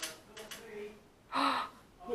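A person's voice without clear words: faint low murmuring, then one short, breathy gasp about a second and a half in.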